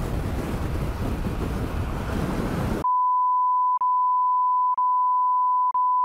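Wind rushing over the microphone of a camera on a moving motorcycle. Then, just under three seconds in, all other sound cuts out and a steady high-pitched censor bleep takes over, broken by brief gaps about once a second.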